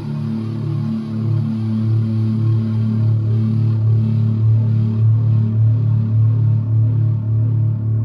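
Ibanez seven-string electric guitar played through distortion: low sustained notes pulsing in a steady repeating rhythm.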